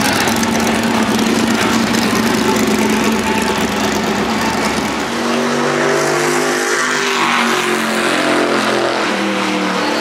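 A NASCAR Whelen Modified's V8 engine runs loudly as the car moves along pit road. About halfway through, the sound changes to a modified's engine idling close by, a steady pitched drone that rises and falls slightly.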